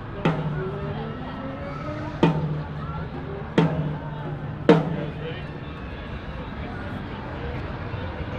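Four single drum hits on a drum kit, spaced irregularly, each with a short low ring after it, over the chatter of a waiting crowd.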